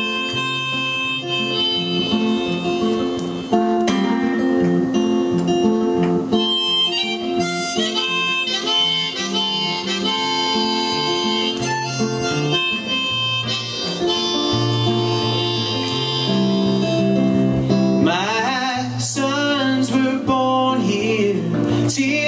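Live harmonica solo over a strummed electric guitar in an instrumental break of a folk-rock song, the harmonica's notes wavering and bending near the end.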